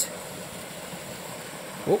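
Steady rush of a small waterfall and stream pouring into a pool.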